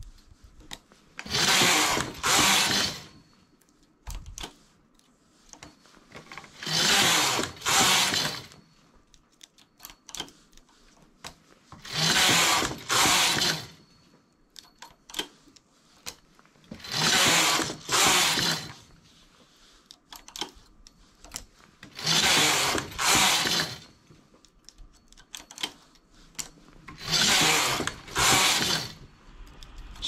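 Knitting machine carriage pushed across the metal needle bed and back, a pair of short noisy sweeps knitting two rows, repeated six times about every five seconds. Between the pairs come small clicks as one stitch at a time is moved with a transfer tool to decrease the edge.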